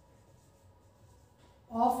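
Faint sound of a marker pen writing on a whiteboard. A woman's voice starts a word near the end.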